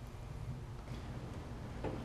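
Faint, steady low background rumble with no distinct sound events.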